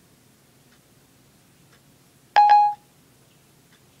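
A single short electronic beep from an iPhone 4S, Siri's tone as it stops listening after a spoken request. The beep comes about two and a half seconds in; the rest is quiet room tone.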